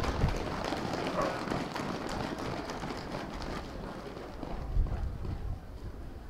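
Applause from a small crowd, many scattered hand claps that thin out and fade over the second half, with a dull low bump about five seconds in.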